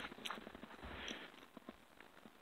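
Faint footsteps in deep snow, a few soft crunches within the first second or so.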